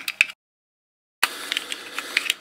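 Plastic clicks from handling a remote control and its open battery compartment, with a sharp click about a quarter of a second in. The sound then drops out completely for just under a second before the clicks and a low hiss return.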